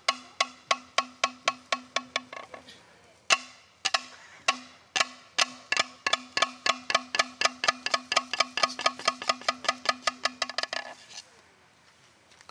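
Hollow lengths of cut green bamboo knocked together, giving ringing, pitched knocks like a moktak (Buddhist wooden fish). A run of about four knocks a second, a few spaced single knocks in the middle, then a quicker even run of about five a second that stops about a second before the end.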